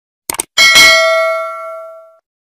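Subscribe-button sound effects: a quick double mouse click about a third of a second in, then a bright bell ding just after that rings on and fades away over about a second and a half.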